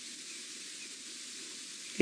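Faint, steady hiss of outdoor bush ambience with a few faint, short high chirps.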